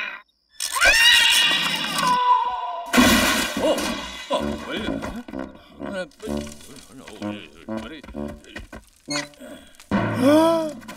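Wordless cartoon character voices: a pitched cry that rises about half a second in over a burst of noise, then a run of short, choppy mumbling and animal-like calls.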